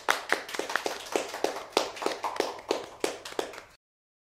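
Two people clapping their hands, a quick uneven run of claps that stops abruptly near the end.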